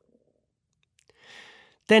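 A pause in the narration: near silence, then a short, soft intake of breath from the narrator about a second in, just before the next word begins at the very end.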